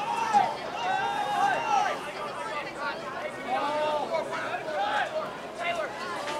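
Voices calling and shouting across an outdoor playing field, with crowd chatter in the background; no words come through clearly.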